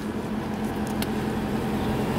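A car's engine idling with a steady low hum, heard at its open window. A faint click about a second in.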